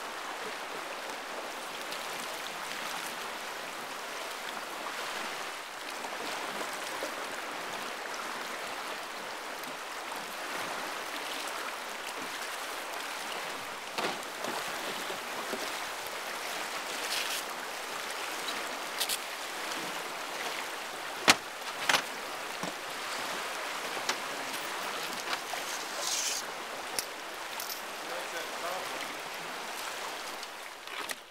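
River current rushing steadily past a small boat, with a few sharp knocks in the second half.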